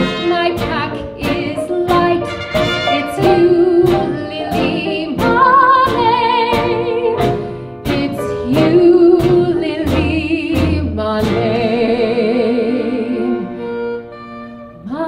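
Live big band accompanying a woman singing a 1940s popular song, her voice full of vibrato over the horns, with the drums keeping a steady beat. Near the end she holds one long note.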